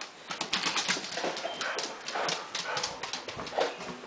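A dog's claws clicking and skittering quickly on a hard wood floor as it hurries along, a rapid, uneven run of sharp taps.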